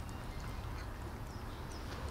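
Cats chewing food from a plastic dish: soft, irregular wet clicks and smacks over a steady low rumble.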